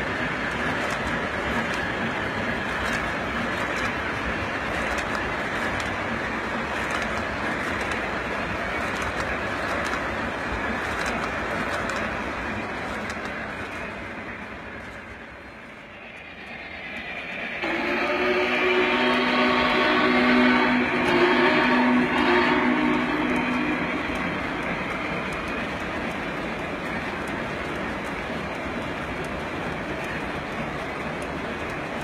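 Lionel O-scale Visionline Big Boy model locomotive and passenger cars running steadily on the layout track. About halfway through the sound fades down and back up, then the locomotive's whistle sounds one long blast for about five seconds, the loudest thing here, before the running sound carries on.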